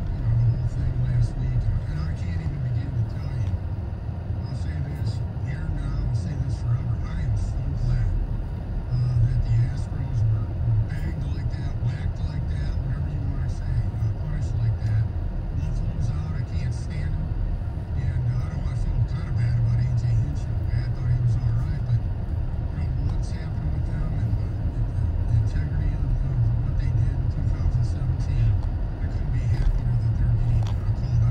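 Steady low rumble of road and engine noise inside a car's cabin in slow, stop-and-go freeway traffic, with faint talk underneath.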